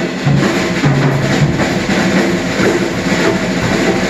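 A live big band playing, with the saxophone section and drum kit to the fore and the brass joining in.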